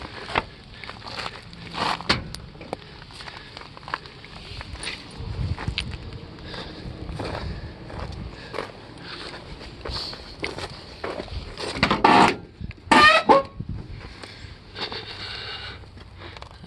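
Hands rummaging in a junked car's cabin: scattered clicks, crackles and scrapes of brittle debris and interior parts being handled, with two louder scrapes near the end.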